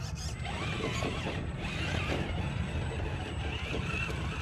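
A 1/10-scale RC rock crawler's electric motor and geared drivetrain whine as it crawls up rocks. The pitch rises and falls with the throttle.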